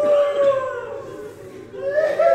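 A person weeping aloud in grief: a long, drawn-out wailing cry that fades away within the first second, followed by fainter cries.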